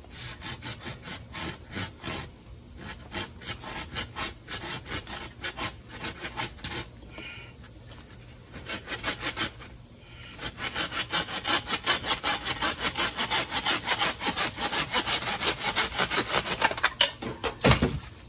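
Hand saw cutting through a thick, large-bore bamboo stalk, with steady back-and-forth strokes at about three a second. After a short lull the strokes come quicker and louder, and a sharp crack near the end marks the cut going through as the lower section breaks away.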